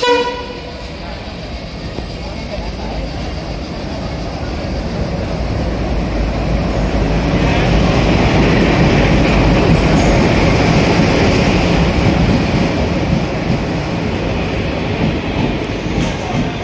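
Indian Railways express train pulling into a station platform. A short horn blast sounds at the start, then the locomotive and coaches roll past, their rumble building to its loudest around the middle and easing toward the end.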